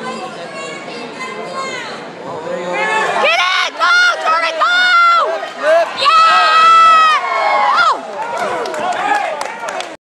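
Spectators cheering in a gym: a crowd murmur at first, then loud, high-pitched, drawn-out yells and screams close to the microphone from about three seconds in, easing off near the end.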